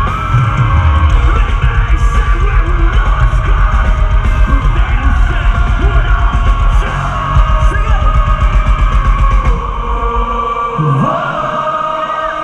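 Live metalcore band playing loud, with heavy drums, bass and yelled vocals, recorded on a phone in the crowd. Near the end the drums and bass drop out, leaving voices singing.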